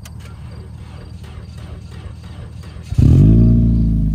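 A low steady rumble, then about three seconds in a car engine suddenly fires and runs loudly with a steady tone: the Toyota Yaris, which has been dead, coming to life.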